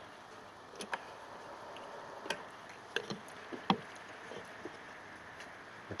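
Nakamichi BX-2 cassette deck transport in rewind, running faintly with several irregular light clicks from the mechanism. It doesn't rewind properly: the little rubber drive wheel lacks the grip to drive the reels, which the owner puts down to a worn idler pulley.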